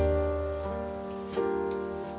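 Background music led by piano: a chord struck at the start and left to ring, with a new chord about one and a half seconds in.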